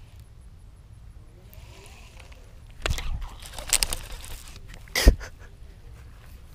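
Small bass hooked on a baitcasting rod and swung out of the pond onto the grass bank: a sharp knock about three seconds in, a cluster of clicks and rattles of rod and reel handling, and a heavier thump about five seconds in.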